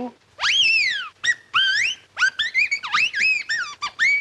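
Whistled canary-like chirps and warbles: one long swoop that rises and then falls, followed by a run of quick short chirps that sweep up and down in pitch.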